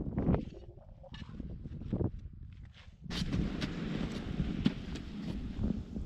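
Footsteps crunching in snow, with wind noise on the microphone growing denser from about halfway.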